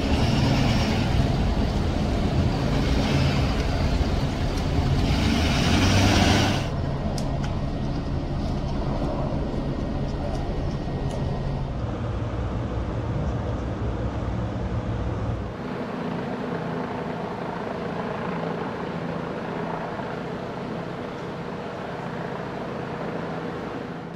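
Street-scene audio of police vehicles running, a steady engine and traffic rumble. It is loudest at first and changes abruptly twice, about six and a half and fifteen seconds in, with a faint steady tone in the middle stretch.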